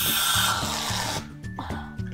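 Aerosol can of Reddi-wip whipped cream spraying into a mouth: a loud hiss for about a second that cuts off suddenly, over background music.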